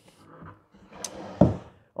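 Wooden crosscut sled being slid and set down onto a table saw, with a sharp click about a second in and a heavier knock just after.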